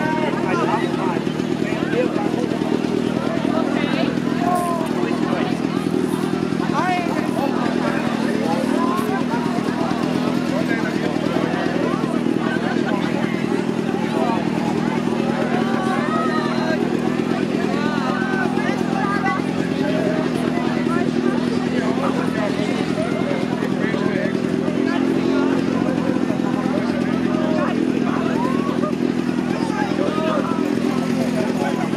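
A small motor on a parade cart runs steadily at idle throughout. Over it come lively voices and shouts from the revellers and the crowd close by.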